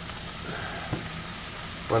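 Cod fillets sizzling steadily on the hot grate of a Ninja Foodi Smart XL Grill over a low steady hum from the appliance. A faint click comes about a second in.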